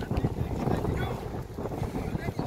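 Wind buffeting the microphone in uneven gusts, with faint voices in the background.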